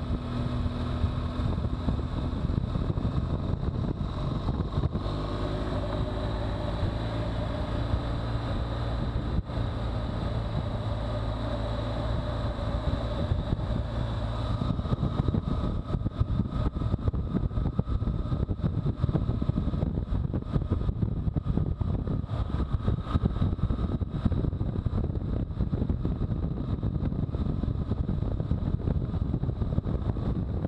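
BMW R1200GS flat-twin engine running at a steady cruising speed, with wind rushing over the camera microphone and road noise. The engine's tones are clearest in the first half; from about halfway the wind rush takes over as speed picks up.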